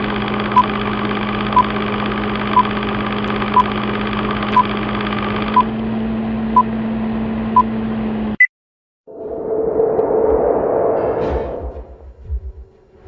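Film-projector running noise with a steady hum, over a film-leader countdown that beeps once a second; the sound cuts off after about eight seconds with a short higher blip. After a moment of silence a swelling rush of noise builds and fades near the end.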